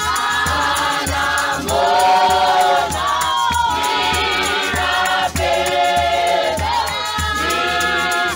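A large church congregation singing a hymn together in many voices, in phrases of a second or two, over a steady low beat.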